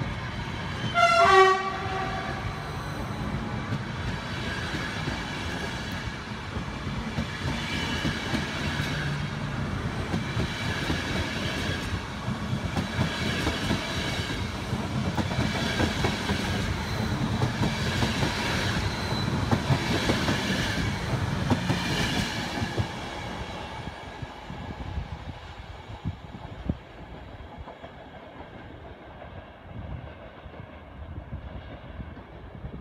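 Passenger coaches of an ÖBB EuroCity train rolling past at speed, with a short horn blast about a second in. The wheels clatter over the rail joints, rising roughly every two seconds as each coach's bogies pass, and the sound dies away near the end as the last coach goes by.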